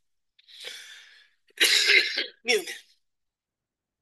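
A man coughing: a faint breath in, then a loud cough about one and a half seconds in, followed straight after by a shorter second cough.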